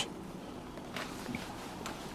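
Faint handling noise: a few light clicks and taps over quiet room noise as hands move parts at the motorcycle.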